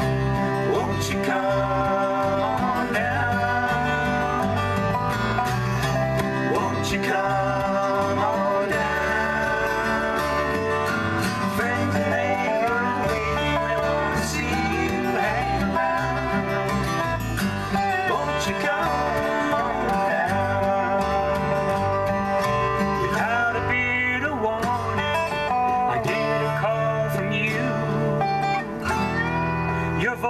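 Instrumental break in a country-flavoured folk song played live by an acoustic trio: a strummed acoustic guitar, a dobro (resonator guitar played lap-style with a slide) and an electric bass.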